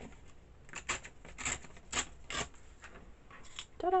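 A sheet of paper being torn along a folded line against the edge of a wooden table, in a series of short rasping rips.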